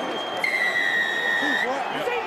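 A single steady, high whistle blast lasting about a second, sounded over continuous crowd noise. It is typical of a rugby league referee's whistle at a try.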